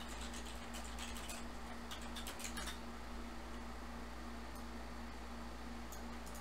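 Light, scattered clicks of a computer keyboard and mouse, clustered in the first few seconds and sparse after, over a steady low electrical hum.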